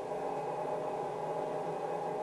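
Steady hiss with a faint electrical hum from the hall's microphone and sound system, with no other sound standing out.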